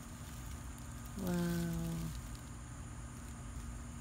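A single drawn-out spoken "Wow!" about a second in, over faint steady background noise; no other sound stands out.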